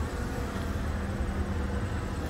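Steady low rumble of a vehicle engine running at idle, with a faint even hum over it.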